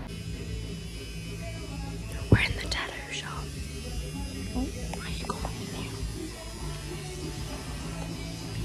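Electric tattoo machine buzzing in short runs that stop and start, with a sharp knock a little over two seconds in and soft whispered voices.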